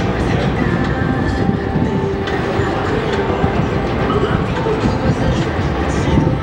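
A train passing, a steady loud rumble with wheel clatter, heard over busy street noise.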